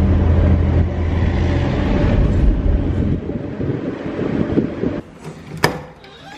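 Car engine and road noise heard from inside a taxi's cabin, a steady low hum, which cuts away after about five seconds to a quiet room. Shortly after, a single sharp click of a door knob's latch being turned.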